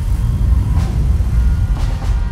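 Movie-trailer sound mix: a deep, loud low rumble of motor-vehicle engines under music, as three-wheeled motor taxis race along a street.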